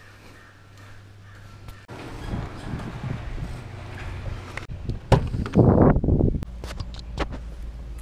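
Footsteps and wind noise while walking out to a Jeep Wrangler. A little after five seconds a sharp click of its door latch, then the loudest part, a burst of rustling and bumps while climbing into the seat, followed by several light clicks from the door and cabin.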